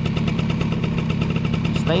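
Small motorbike engine idling with a steady, even putter.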